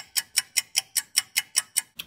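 Clock-ticking sound effect: quick, even ticks about five a second, stopping abruptly at the end.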